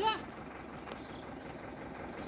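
Farmtrac 6060 tractor's diesel engine running steadily at idle, a low even noise. A brief loud call with rising and falling pitch cuts off just at the start.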